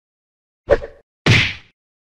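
Two sharp impact sound effects about half a second apart, each starting suddenly and dying away quickly, the second fuller and longer than the first.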